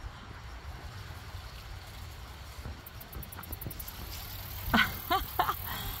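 Steady low outdoor rumble with faint scattered clicks, then a person laughing in a few short bursts about five seconds in.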